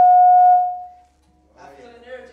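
A single steady high-pitched tone, held loud and then fading out about a second in; a voice starts faintly near the end.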